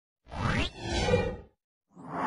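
Whoosh sound effect of an animated logo intro, in two swells: the first sweeps up in pitch, the second peaks and stops about a second and a half in.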